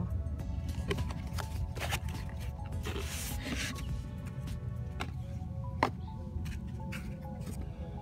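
Background music, with unboxing handling noises over it: the foam insert sliding and rustling out of a cardboard box about three seconds in, and a single sharp click near six seconds.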